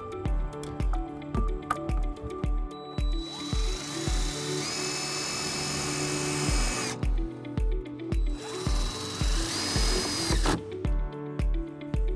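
Cordless DeWalt 20V MAX driver with a quarter-inch socket driving a self-tapping screw into the car's sheet-metal body, running in two spells: about four seconds, then a shorter burst of about two seconds. Background music with a steady beat plays throughout.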